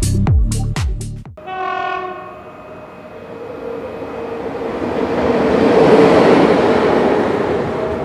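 An electronic dance beat runs for about the first second, then cuts to a train horn sounding about a second and a half in. A passing train's rush follows, swelling to its loudest about six seconds in and fading near the end.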